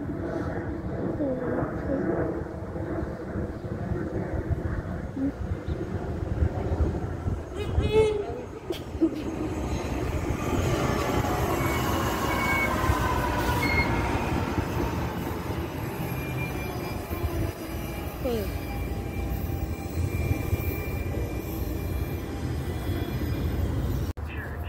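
A commuter train passing along the tracks: a steady rumble of wheels on rail with a few sharp clicks, and a falling whine as it goes by midway through.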